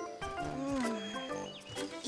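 Light background music for a children's cartoon, with a short creature-like vocal call from a cartoon dinosaur that rises and then falls in pitch about half a second in.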